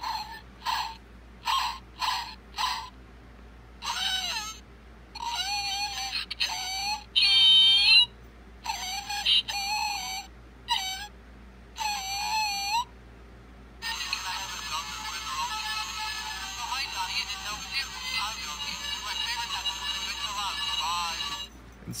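Talking plush pug toy in a tuxedo playing its built-in sound clips through a small speaker after its foot is pressed: a run of short yaps, then choppy recorded voice lines that are hard to make out, then a longer, dense music-like passage, looping on by itself.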